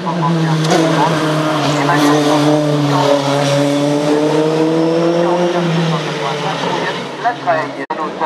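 Race car engine running hard during a hillclimb run, heard across the valley. Its note holds steady, climbs slightly, then drops away about six seconds in, with spectators' voices over it. The sound cuts off abruptly just before the end.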